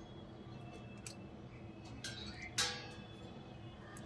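Quiet kitchen with a few faint clicks and taps, one about a second in and a slightly louder one around two and a half seconds in, over a faint steady hum.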